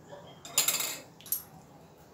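A metal kitchen utensil clinking against a cooking pot: a quick cluster of clinks about half a second in, then one more shortly after.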